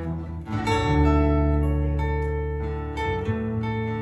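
Instrumental passage on acoustic guitars: ringing chords over held low notes, changing chord a little past half a second in and again about three seconds in.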